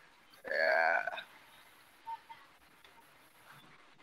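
A short, pitched vocal sound from a person on a video call, under a second long, about half a second in, followed by faint scattered noises.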